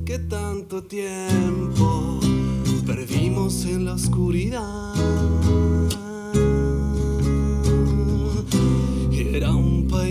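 Nylon-string classical guitar playing plucked notes over sustained deep notes from an electric bass, the instrumental opening of a song. The music drops out briefly about a second in and again about six seconds in.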